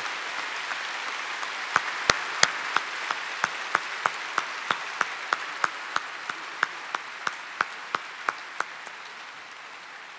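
Audience applause, gradually dying away. From about two seconds in until near the end, one pair of hands claps close by in a steady rhythm of about three claps a second.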